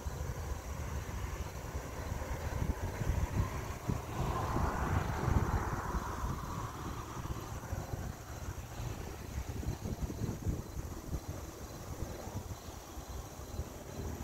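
Outdoor background noise: a steady low rumble, with a broad swell of noise that builds and fades around five seconds in, like something passing in the distance.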